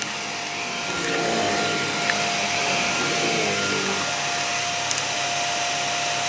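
Upright bagless vacuum cleaner running on carpet: a steady motor whine with a constant tone, the sound shifting slightly as the head is pushed back and forth, and a couple of light ticks.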